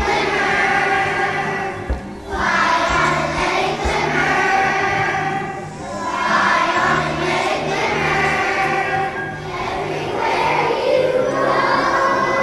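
A choir of first-grade children singing together over an accompaniment with a repeating bass line, the sung phrases pausing briefly every three to four seconds.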